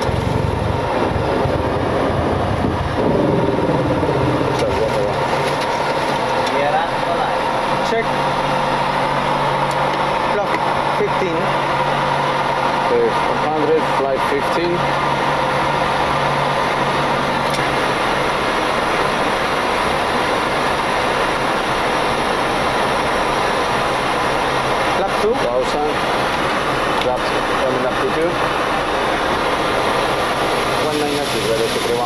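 Flight-deck noise of a Boeing 727-200 in its initial climb after takeoff: a steady, loud rush of airflow and engine noise at climb power, with a constant high hum running through it.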